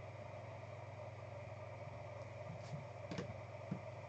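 Low steady room hum, with a few faint clicks and a soft tap near the end as plastic card top-loaders are set down on a table.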